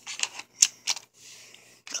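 Several sharp, irregular plastic clicks from a toy car track set being handled, then a soft rustle.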